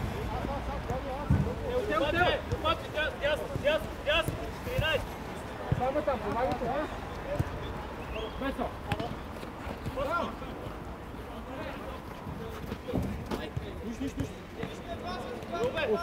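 Players' voices calling out on a small-sided football pitch, in short scattered shouts, with a few short thuds now and then.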